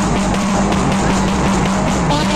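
Loud music over a public-address loudspeaker, with a steady low note under a beat.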